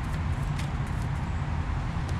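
A deck of tarot cards being shuffled in the hands, giving a few faint light clicks, over a steady low outdoor rumble.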